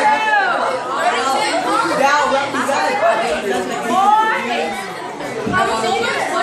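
A group of young voices chattering and calling out over one another, with a few high, arching calls near the start and again about four seconds in.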